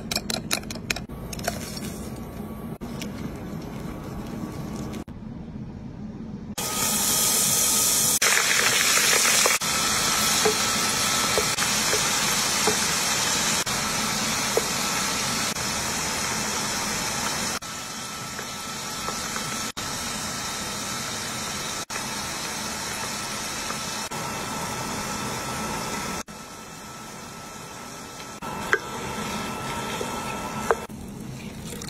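A wire whisk clicking in a bowl of beaten egg at the start. From about six seconds in, hot oil sizzles steadily as a panful of egg-battered strips deep-fries.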